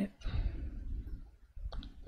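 Soft breathy noise, then two short clicks in quick succession near the end.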